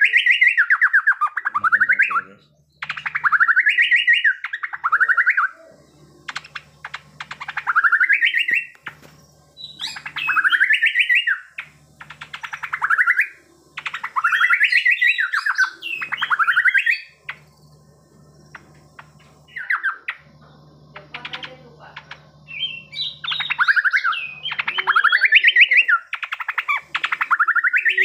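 A caged cucak pantai songbird singing loudly in repeated phrases of rapid, fast-warbled notes, each burst lasting one to three seconds with short pauses between. This is the non-stop 'gacor' singing of a well-fed, well-kept bird.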